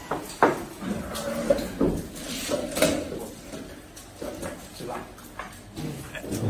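Glasses and dishes knocking on a table amid low voices, with sharp clinks about half a second in and again near three seconds.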